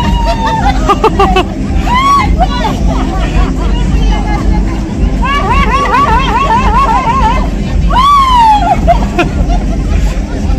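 Women's voices chattering and calling out close by, one run of quick sing-song syllables about four a second and a long falling call near the end, over background crowd chatter and a steady low rumble.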